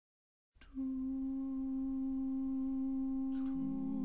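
Unaccompanied male voices opening a Renaissance madrigal: one voice comes in about half a second in and holds a single long note. A second, lower voice enters on its own note near the end.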